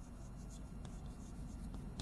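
Chalk writing on a blackboard: faint, irregular scratching strokes and light taps of the chalk against the board, over a low steady room hum.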